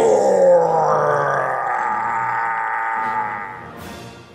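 A man's voice letting out one long, strained yell as a cartoon character transforms into a Hulk-like brute. It starts high, slides down in pitch over the first second, holds, then fades away near the end.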